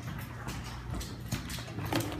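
Footsteps on a hardwood floor, about two knocks a second, over a steady low hum.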